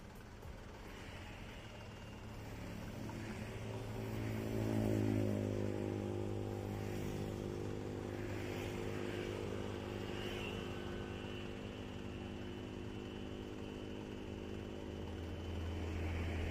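Road traffic with motorcycles and cars passing. An engine drone builds over the first few seconds, peaks, then holds steady over a low rumble.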